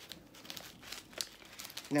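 Crinkling and rustling as a fuzzy zippered makeup bag is opened and the contents inside are handled, with a small click about a second in.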